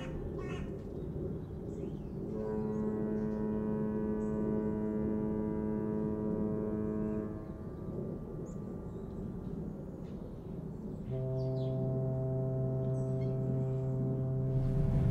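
Two long blasts of a ship's horn over a steady low rumble: the first lasts about five seconds, and after a pause a second, lower-pitched blast begins about eleven seconds in.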